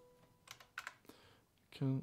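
Three quick, faint clicks at a computer, about a third of a second apart, as playback is stopped in the music software. A man's voice begins near the end.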